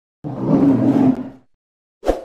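Animal roar sound effect on a channel logo animation: one roar of just over a second, starting a moment in and dying away.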